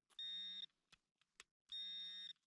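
Metal detector giving two short, steady, high-pitched beeps about a second and a half apart, signalling a metal target in the dug soil, which turns out to be a coin.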